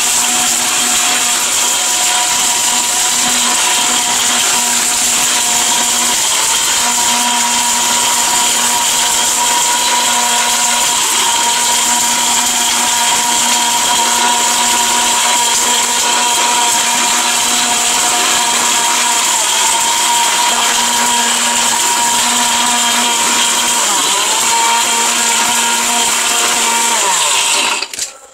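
ORPAT mixer grinder's motor running at full speed, its stainless steel jar grinding a dry ingredient into powder. A steady, loud whine that sags briefly in pitch a couple of times and cuts off suddenly at the end.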